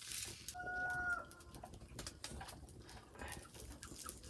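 A chicken gives one short call on a steady pitch, starting about half a second in and lasting under a second. An open fire crackles throughout as a chicken's feathers are singed off over it.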